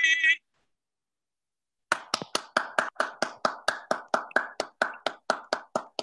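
One person clapping steadily, about five claps a second, starting after a second and a half of silence and running about four seconds. A sung note cuts off just before the silence.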